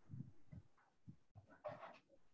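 Near silence on an open call line, with a few faint, short low sounds.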